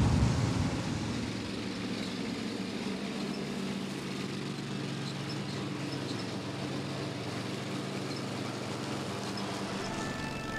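Zero-turn ride-on mower's engine running steadily, a low even hum, as it mows tall grass.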